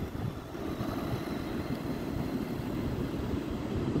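Steady low rumbling noise of wind buffeting the microphone over the wash of surf, with no clear motor whine.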